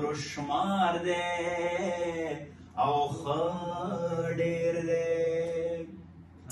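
A man singing a Pashto poem unaccompanied, in a chanting style with long held notes: one phrase, a breath about two and a half seconds in, then a second phrase ending on a long held note.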